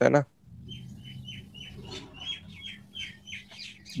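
Bird chirping: a run of short chirps that fall in pitch, about three a second, over a faint low steady hum.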